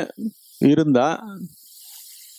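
A man's voice speaking a short phrase through a headset microphone, followed near the end by a faint steady hiss.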